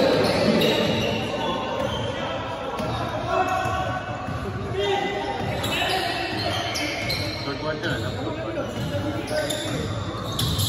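A basketball being dribbled on an indoor gym court, the bounces mixed with players' and onlookers' voices carrying around the hall.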